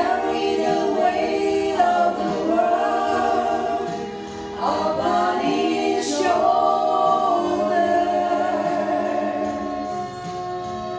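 Three women singing a gospel song together in harmony into microphones, holding long notes, with a brief breath between phrases about four seconds in.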